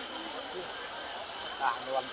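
Steady outdoor background hiss with no distinct event, and a single short spoken word near the end.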